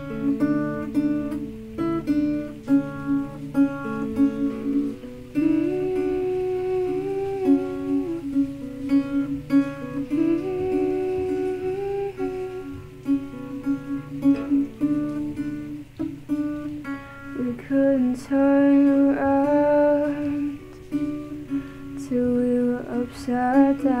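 Acoustic guitar played as a slow, even song intro, with a woman's voice joining in long sung notes from about five seconds in and singing the first words near the end.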